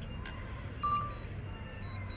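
One short electronic beep a little under a second in, over a faint low hum.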